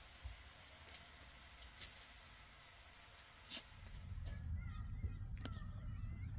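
Faint scattered clicks and rustles. About four seconds in, a low steady rumble sets in, with a few faint animal calls.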